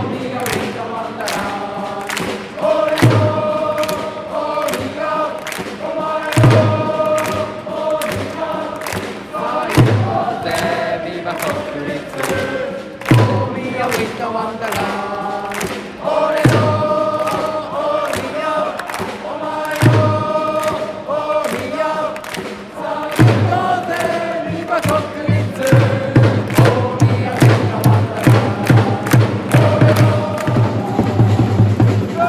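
Football supporters' section singing a welcome chant in unison as their players enter the pitch, over a steady drumbeat of about two beats a second. The sung phrase repeats every three seconds or so, and the low drum hits come thicker and heavier in the last six seconds.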